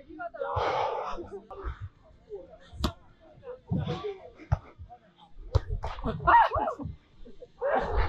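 A volleyball being struck by players' hands and forearms during a beach volleyball rally: several sharp slaps, the loudest about three seconds in, with short shouts from the players in between. The sound is muffled by a wind cover on the camera's microphone.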